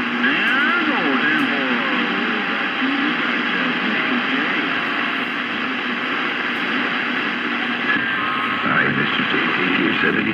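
CB radio receiver on channel 27.285 MHz hissing with band noise between DX transmissions. Faint, garbled sideband voices and whistles slide up and down in pitch through it, with a burst of them near the start and again about 9 seconds in.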